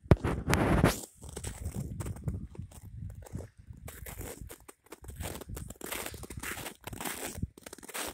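Footsteps crunching in snow, in an irregular run of short crackly steps, with a louder rush of noise in the first second.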